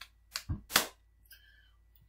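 A few short, sharp clicks close together in the first second, then quiet.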